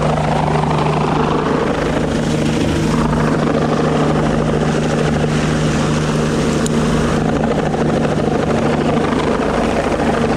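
Helicopter hovering close by, its rotor and turbine making a loud, steady drone with a constant low hum.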